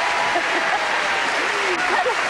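Studio audience applauding steadily, with a few voices calling out faintly over the clapping.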